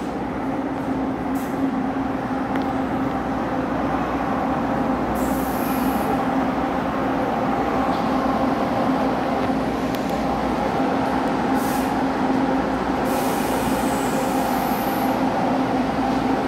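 DRC1000 diesel multiple unit running steadily at the platform, a constant engine drone that grows slightly louder. Two brief hisses cut in, about five and thirteen seconds in.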